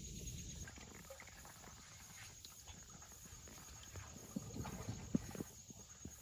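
Scattered small clicks, taps and drips from a kayak and paddle on still water, growing louder and closer together near the end, over a faint steady high hum.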